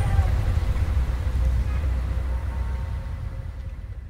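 A low, steady rumbling ambience with a few faint tones, slowly fading out.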